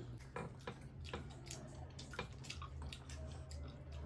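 Faint, irregular clicks and wet smacks of a person chewing fruit close to the microphone, over a low steady hum.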